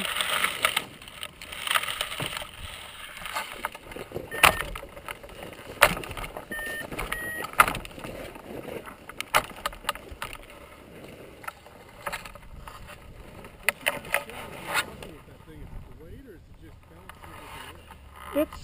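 Handling noise on a hang glider's control-bar camera: irregular knocks and clicks as the glider is moved, dry grass brushing the microphone, and wind noise. The knocking thins out over the last few seconds.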